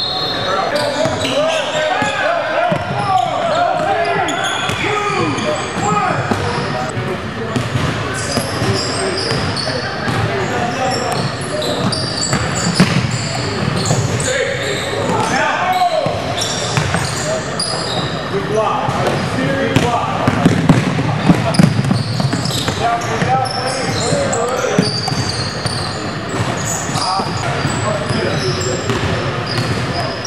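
Basketball game in a gymnasium: a ball bouncing on the hardwood court, with players and spectators talking and calling out throughout, echoing in the hall. Several sharper impacts stand out past the middle.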